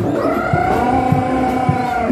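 A long held, wailing note lasting about two seconds and cutting off at the end, over a steady drumbeat in traditional Javanese Bantengan accompaniment music.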